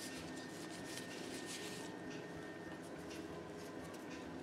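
Crepe paper being peeled and crumpled off a dyed egg by hands in nitrile gloves: soft rustling and crinkling, busiest in the first two seconds.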